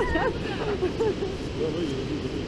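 Steady rush of Baltic surf and wind buffeting the microphone, with voices calling out and laughing over it.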